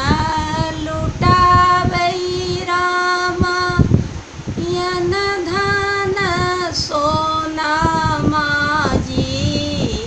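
An older woman singing a folk song for Ram's birth solo, without accompaniment, in long held notes that step from pitch to pitch, breaking briefly for breath about four seconds in and again near the end.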